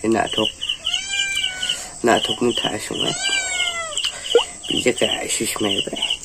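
A cat meowing twice, long drawn-out meows that rise and then fall, over a fast, even high-pitched chirping that repeats throughout.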